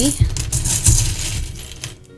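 Small wooden dice rattling and clattering together, with a couple of low knocks, stopping just before the end.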